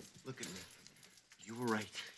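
A man sobbing faintly, with small clicks and rustles, until a man's voice starts speaking about one and a half seconds in.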